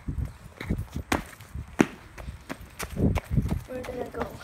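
Footsteps and handling bumps on a handheld camera as the person walks off: irregular knocks and thumps, the sharpest about one and two seconds in.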